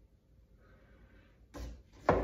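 A plastic glaze jar set down on a wooden workbench: a single soft knock near the end, after a quiet stretch.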